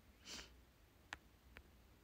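A single short sniff through the nose, followed by two faint clicks about half a second apart.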